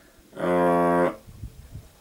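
A man's drawn-out hesitation sound, a single steady-pitched "yyy" held for under a second, starting about half a second in.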